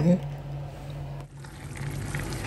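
Faint, soft wet sounds of food being worked in a large pot of stew, over a steady low hum; the sound drops briefly a little over a second in, then picks up again.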